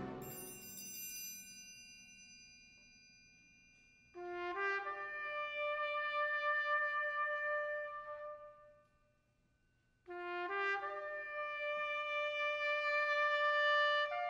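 A loud wind-ensemble chord dies away with a high ringing. About four seconds in, trumpets enter one note after another to build a sustained chord, stop for about a second and a half, then repeat the same staggered entry.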